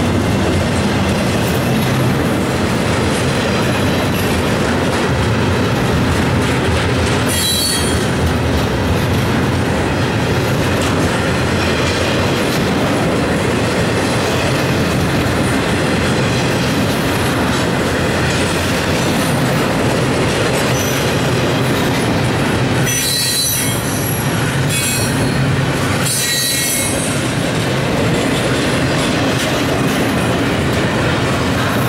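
CSX double-stack intermodal freight train rolling past steadily, a loud continuous rumble and clatter of steel wheels on rail. Brief high-pitched wheel squeals rise out of it about seven seconds in and twice more near the end.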